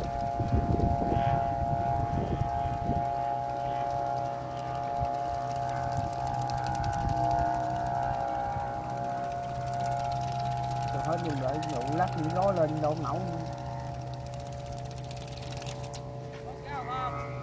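Kite flute (sáo diều) on a kite flying in strong wind, sounding a steady chord of several sustained tones. Rough wind buffeting is heard in the first few seconds.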